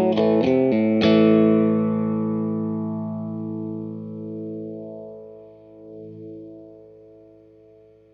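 Electric guitar played through a Blackout Effectors Sibling analog OTA phaser pedal: a few quick strummed chords, then a last chord about a second in that is left to ring and slowly fade, with the phaser's sweep swelling through the sustain.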